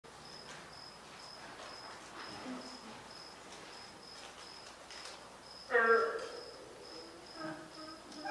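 A cricket chirping at an even beat, about two high chirps a second. A short voice sound breaks in a little before the end.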